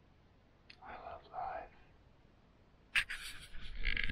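A person whispering a couple of words, then a sharp click about three seconds in, followed by rustling handling noise near the end.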